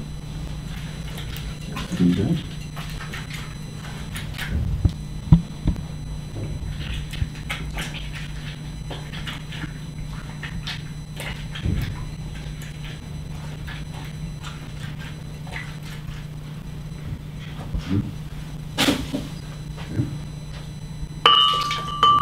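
Oranges being cut and hand-squeezed: scattered knocks of a knife on a cutting board and handling sounds over a steady low hum. Near the end a glass gives a brief ringing clink.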